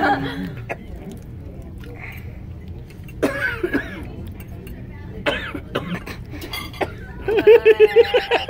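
People at a dining table: short snatches of voices and a few light clinks over low background noise, then a burst of laughter near the end.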